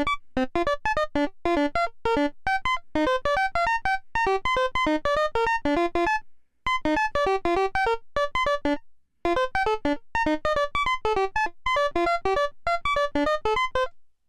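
Modular synthesizer voice playing a fast sequenced line of short pitched notes at shifting pitches, about five a second. The line has brief gaps where steps drop out, as they should with the sequencer's note probability set to 77%.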